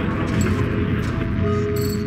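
Experimental electronic sound design: a dense, rapid clicking and crackling texture, ratchet-like, with held tones coming in about halfway through and rising higher near the end.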